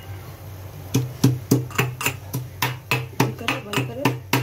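Metal pestle pounding fresh ginger and green cardamom pods in a metal mortar. Sharp knocks with a short ring, about four a second, start about a second in.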